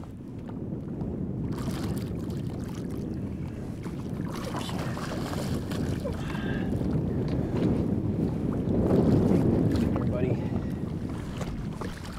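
Water splashing as a hooked channel catfish thrashes at the surface beside a boat, building to its loudest a little past the middle.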